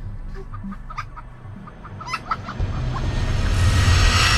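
A chicken clucking a few short times, then a rising rush of noise with a deep rumble that swells to its loudest at the end, with a burst of flame.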